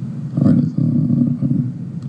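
A man's voice, low and drawn out with no clear words, starting about half a second in.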